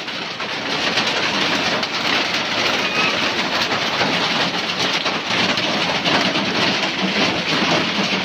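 Heavy rain pouring down in a steady, loud, unbroken hiss.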